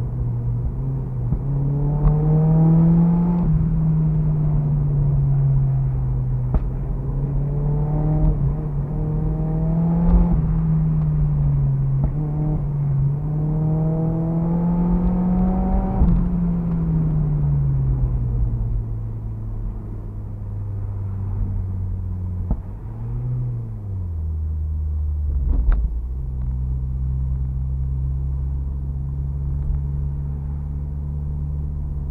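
Turbocharged Mazda MX-5's four-cylinder engine heard from inside the cabin, revs climbing three times with short dips between as it accelerates through the gears. It then eases off and the revs fall away, gives a short blip, and settles into a low steady drone near the end.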